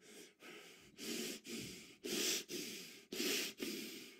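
A man breathing hard and fast close to a headset microphone, quick noisy breaths at roughly two a second, catching his breath after shouting.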